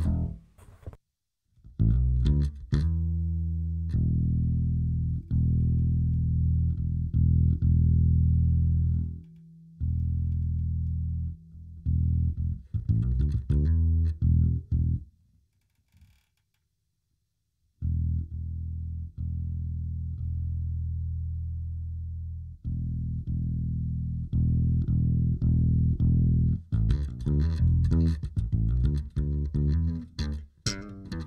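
Electric bass guitar played through a ToneX One and Zoom B6 effects chain. It opens with a few quick notes, then long held low notes. It stops briefly about halfway, returns to held notes, and turns to busier, faster playing near the end.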